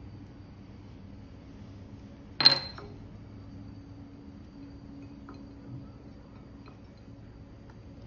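A single sharp clink with a brief ring from a small glass bowl being struck about two and a half seconds in, while berries are being prepared in it. A faint steady hum runs underneath.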